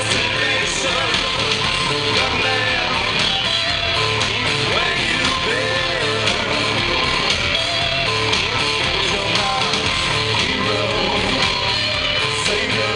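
A live rock band playing loud, with electric guitars, bass and drums, heard from within the crowd through a camera's microphone.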